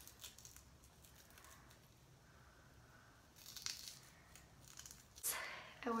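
Oyster crackers being crushed and rubbed between fingers over a palm: faint, scattered crackling, with a louder crunch a little past halfway.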